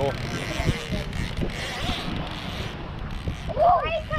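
Wind buffeting the microphone over a steady hiss, then a short high-pitched wavering shout from a person near the end.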